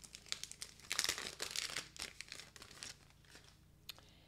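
Clear plastic packaging of a sheet of adhesive-backed gems crinkling and rustling as it is opened and the sheet slid out. The crackling is busiest about a second in and dies down after about three seconds.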